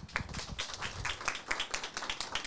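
A small audience clapping: many quick, uneven hand claps overlapping for the whole stretch.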